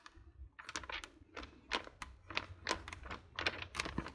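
Pages of a glossy magazine being turned one after another: a quick, uneven run of short paper flicks and rustles.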